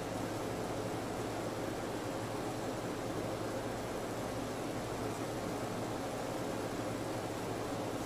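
Steady room tone: an even hiss with a constant low hum underneath, from ventilation or equipment noise.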